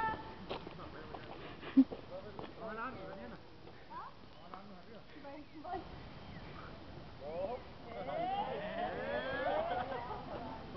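Voices of several people talking at a distance, faint at first and louder and overlapping in the last few seconds, with one sharp click about two seconds in.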